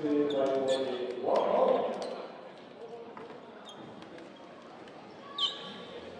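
A basketball bouncing on the hardwood floor of a sports hall, a sharp knock every fraction of a second, under a man's raised voice at the start. There is a short loud burst of noise just over a second in, and a brief high squeak about five and a half seconds in.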